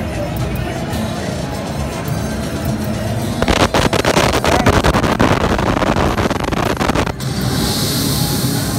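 Sphinx 4D slot machine's bonus music playing, then a loud rushing, crackling noise for about four seconds that stops suddenly, followed by a high hiss.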